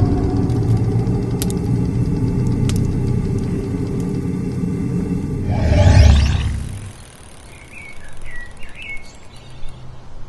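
Intro sound design: a low rumbling drone with a couple of sharp high clicks, swelling into a loud whoosh about six seconds in. It then drops to a quieter outdoor ambience with a few bird chirps.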